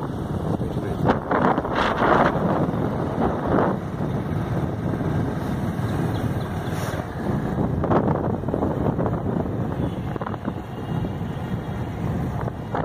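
Wind rushing over the microphone on a moving motorcycle, with vehicle and road noise beneath. It comes in louder gusts about one to two seconds in and again near eight seconds.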